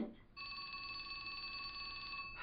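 Telephone ringing: one steady ring starts a moment in and lasts about two seconds.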